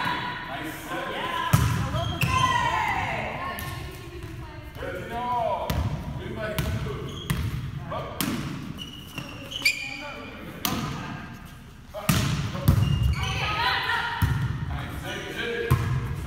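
Volleyballs being struck and bouncing on a hardwood gym floor during a team drill: repeated sharp thuds at irregular intervals, with girls' voices calling out between them.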